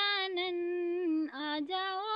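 A woman singing a Ganesh bhajan unaccompanied, drawing out long held notes with no words; the pitch sinks a little after about a second and comes back up.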